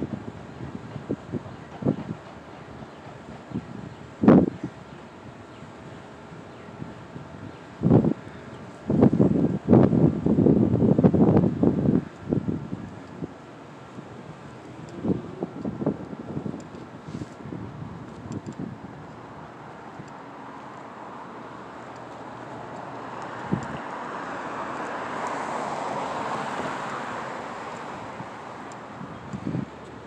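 Wind buffeting the microphone outdoors, with heavy rumbling gusts a third of the way in and a few sharp knocks. Near the end a broad rushing noise swells over several seconds and fades.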